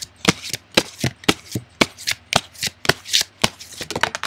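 A deck of cards being shuffled by hand: a quick, even run of sharp card slaps, about four a second.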